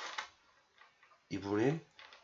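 A pen scratching short dashed strokes onto paper, with a brief noisy scratch at the start and faint light ticks after it. One short spoken syllable comes about 1.3 seconds in.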